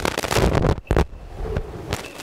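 Wind buffeting the microphone: a low rumble broken by a few sharp pops.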